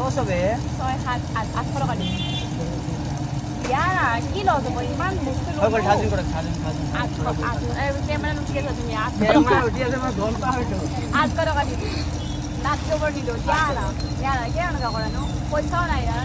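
Voices talking and chattering over a steady low hum and rumble of background noise.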